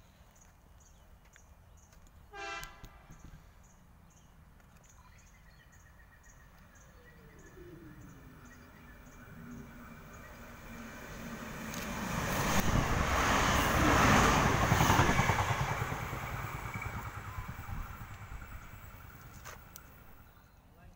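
NSW TrainLink Xplorer diesel multiple unit approaching and running through the station without stopping: its rush of wheels and engine swells, is loudest a little past the middle and then fades as it goes away. A short horn toot sounds about two and a half seconds in.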